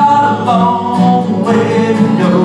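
A man singing a country gospel song, accompanied by strummed acoustic guitar and bass guitar.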